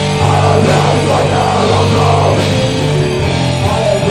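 Hardcore band playing live and loud, with distorted electric guitars, bass and drum kit.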